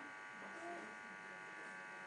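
A steady electrical buzz made of many evenly spaced tones, low in level, with faint voice fragments in the middle.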